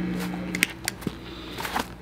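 A sustained note from an electric guitar through its amp rings steadily and is cut off about half a second in. A few small clicks and handling noises from the guitar follow.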